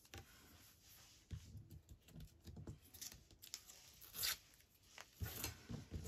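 Faint rustling of a strip of paper being handled and folded over by hand, with a couple of louder brief rustles in the second half.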